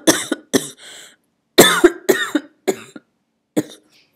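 A woman coughing into her fist: a run of coughs, a breath in, a second longer run of coughs, then one last cough near the end.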